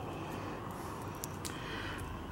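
Quiet outdoor background: a steady low hum and hiss with a few faint, short ticks around the middle.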